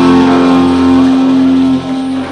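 Live band holding its final chord, guitars and keyboard sustaining a steady ringing chord that drops in level near the end.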